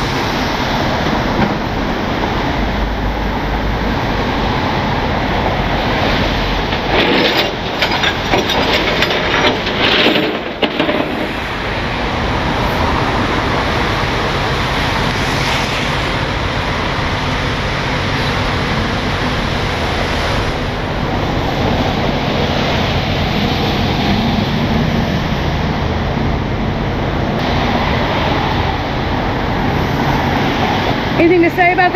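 Rollback tow truck's engine idling steadily, a low rumble under a wash of wet-street and rain noise. A cluster of knocks and clatter comes between about seven and ten seconds in.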